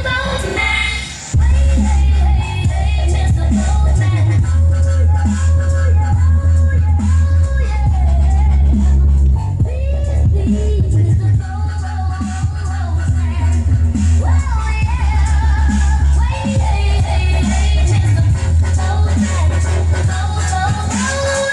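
Music with singing and heavy bass played through two 8-inch Jaycar Response subwoofers in a sealed MDF box. The bass notes change every second or two, with a short drop in level about a second in.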